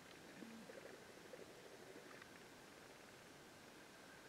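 Near silence: faint background with a few soft ticks and brief low sounds in the first two seconds.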